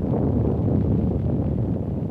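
Low, steady rumble and rush of an atomic test's blast wave and the dust-laden wind it drives over a trench.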